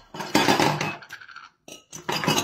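A metal wok and its lid clattering and scraping on a gas stovetop for about a second, then a short pause and a single clink near the end.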